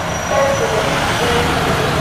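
A Hyundai minibus drives past close by, its engine and tyres on the wet road sounding over a steady background of city traffic.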